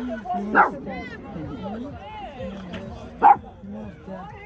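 Two-month-old puppies giving two short, sharp barks, the first about half a second in and the second near the end, over people chatting.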